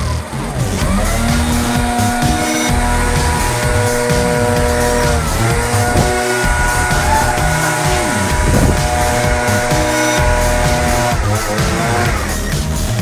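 Gas-powered backpack leaf blower running at high revs, its pitch dipping briefly about five seconds in and again near the end.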